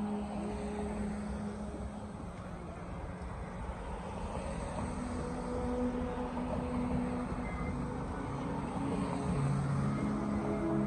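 Cars driving past on a street: steady tyre and engine noise, swelling a little as a car passes close about six seconds in.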